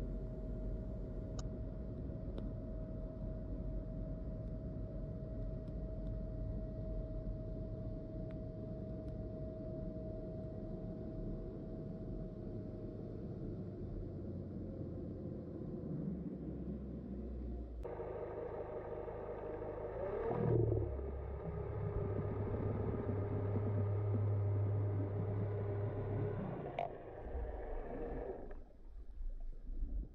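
Boat engine and propeller heard underwater while the boat pulls hard on the anchor rode: a steady low rumble. About 18 s in, the engine sound changes and a hum comes up; its pitch dips and rises back around 20 s, then holds steady before dropping away near the end.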